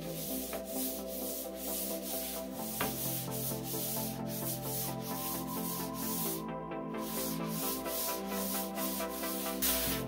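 Hand sanding with a green sanding sponge on polyurethane-coated wooden boards, a light scuff-sanding between coats of poly: brisk back-and-forth strokes, about three a second, with a short pause a little past halfway.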